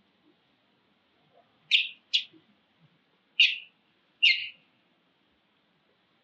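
Infant long-tailed macaque giving four short, high-pitched distress cries in two pairs, the mother having handled it roughly and turned away.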